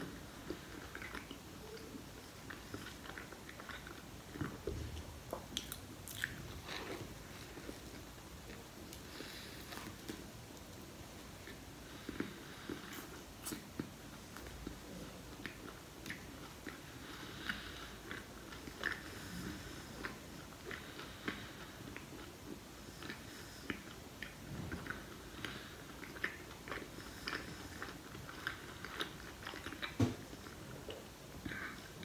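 A person biting and chewing a bread roll filled with red and green peppers, close to the microphone: a steady run of small, short mouth clicks and soft crunches.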